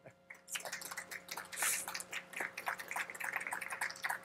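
Audience applause: many quick, irregular claps starting about half a second in.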